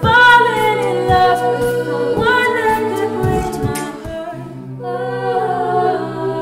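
Mixed-voice a cappella group singing wordless chords over a sung bass line, with beatboxed kick-drum hits about once a second that drop out after about four seconds. A lead voice slides down in pitch near the start.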